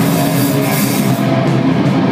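Live metalcore band playing loud: heavy distorted electric guitar over a drum kit with crashing cymbals, no vocals in this stretch.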